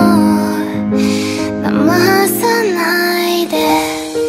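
A female singer's cover of a Japanese pop song, sung over instrumental backing, with long held notes in the accompaniment.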